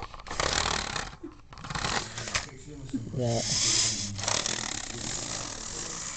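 Model railway train running on the track: the small electric motor and wheels whirring and rattling, louder for about a second around the middle.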